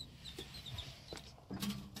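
Mostly quiet: a few faint taps, a small dog's claws on metal RV entry steps, with a short run of faint high chirps in the first second.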